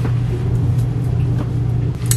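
A steady low hum with no distinct event.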